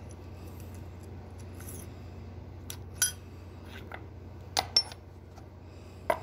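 Light metallic clinks as a machined L-100 jaw-coupling hub is handled: one about three seconds in and two in quick succession near five seconds, over a steady low hum.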